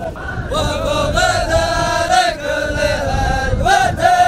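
A large group of men chanting together in unison, a Dhofari hbout, with drawn-out held notes.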